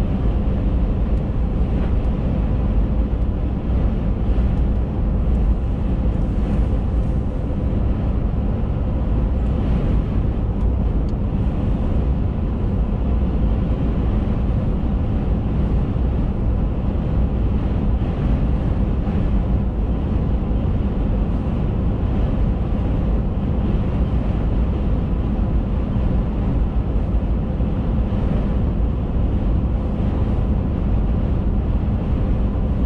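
Steady road and engine noise from inside a vehicle cab at highway speed: a low rumble with a faint steady hum over it.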